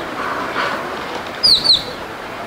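A bird gives two quick, high chirps, each sliding downward in pitch, about one and a half seconds in, over steady background noise.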